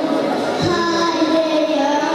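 Young girls singing a melody together into a microphone, with long held notes. A brief low thump sounds just over half a second in.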